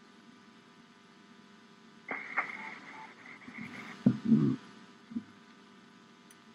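Steady low electrical hum inside a police patrol car. About two seconds in, a two-second burst of radio static starts and stops sharply, then a few muffled thumps come about four seconds in, the loudest sounds here.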